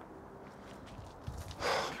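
Faint background hiss, then a short, sharp breath in near the end, just before speech resumes.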